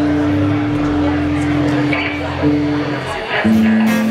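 A live rock band's amplified instruments holding sustained notes while the players noodle before a song, the held note dropping to a lower pitch a little over three seconds in.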